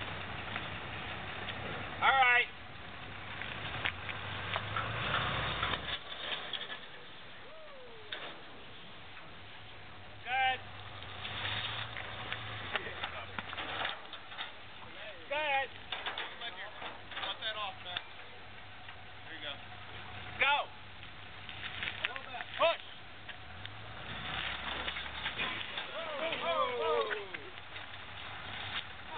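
People's voices calling out and talking on and off, with several loud short shouts, over scattered knocks and a low engine hum that comes and goes.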